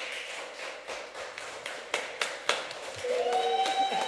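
Sparse, irregular claps and taps from a few people. About three seconds in, a held pitched tone with overtones starts, sliding up and then holding steady.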